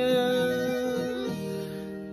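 A man singing a corrido, holding one long note that slowly fades, over backing music with guitar.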